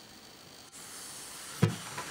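Steady faint hiss, then a single thump about three-quarters of the way in as hands come down on a sheet of paper on a desk.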